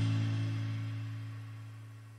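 A rock band's held guitar chord ringing out and fading steadily away, like the last chord at the end of a psych-rock song.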